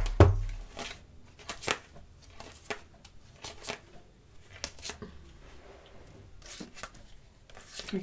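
Petit Lenormand playing cards being handled and gathered by hand: a sharp click at the start, then light, irregular card clicks and slides.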